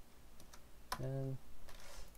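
Computer keyboard typing: a few light key clicks. About a second in comes a man's brief voiced 'uh'.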